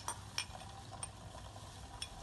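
Three light clicks in the first second or so, small hard taps against a glass cup as yeast and warm water are stirred in it.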